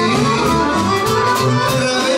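Accordion-led folk band playing live, the accordion carrying the tune over a drum kit keeping a steady beat.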